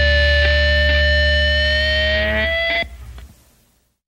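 End of a rock song: distorted electric guitar and bass hold a final chord under a steady, slightly wavering high feedback tone that bends up a little before everything cuts off about three seconds in and rings away to silence.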